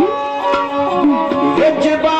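Dhadi folk music: a sarangi bowed in a sliding melody, with strokes on small dhadd hand drums.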